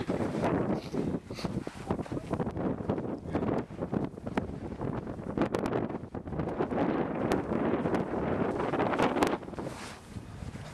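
Strong desert wind buffeting the microphone in uneven gusts. It eases a little before the end.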